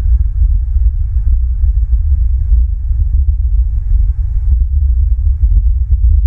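Loud, continuous low rumble with irregular soft thumps, the buffeting of wind on an outdoor camera microphone.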